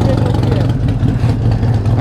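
A motor vehicle engine idling with a steady low hum, with faint voices in the background.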